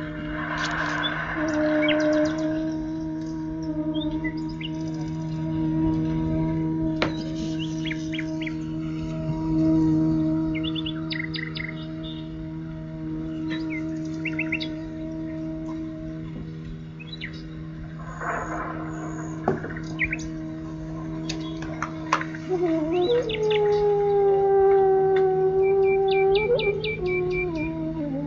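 Slow raga-style music over a steady low drone, with birdsong chirping throughout. Near the end a sustained melody note slides up, holds for a few seconds, then slides down.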